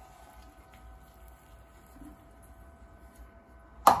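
Quiet stretch with a faint steady hum, then one sharp metallic knock near the end as a small metal flan mould coated with caramel is set down on a granite worktop.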